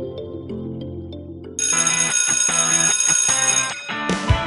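Background music: soft held notes, then about a second and a half in a louder, brighter section with a steady beat comes in.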